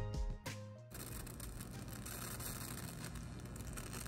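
A moment of music, then from about a second in the steady hiss and low hum of a high-frequency Tesla candle's plasma flame burning.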